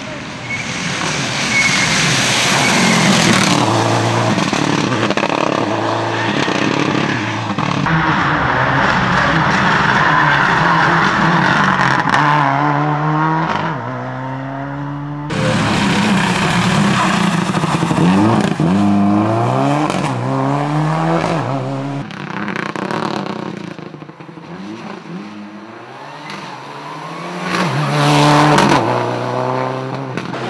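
Rally car engine revving hard and climbing through the gears as the car passes at speed, pitch rising and falling back with each shift. The sound changes abruptly about halfway in, with the engine note dropping and building again as it passes once more.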